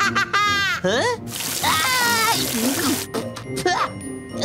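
A cartoon water splash about a second and a half in, lasting about a second, as a character is drenched, with a high cartoon voice crying out over it. Cartoon voices come before and after it.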